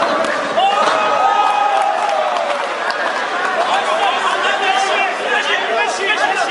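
Spectators in a sports hall shouting and talking at once during a kickboxing bout, many voices overlapping.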